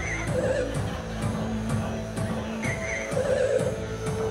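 Live electronic music played on keyboards and synthesizers: a steady beat with a warbling synth figure that comes back a couple of times.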